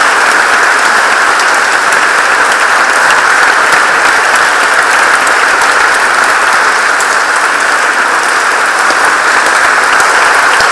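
Audience applauding, a dense, steady sound of many hands clapping.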